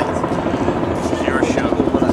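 A low, steady engine drone with a fast chopping pulse, under faint voices.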